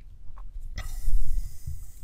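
A person breathing out hard close to the microphone: a breathy hiss with a low rumble of breath hitting the mic. It starts a little before the middle and lasts about a second.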